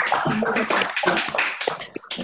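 Hands clapping in quick, irregular claps, applause from call participants heard through video-call audio, with a few voices mixed in; it dies away near the end.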